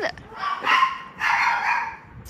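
A dog barking in two rough bursts, about a second apart.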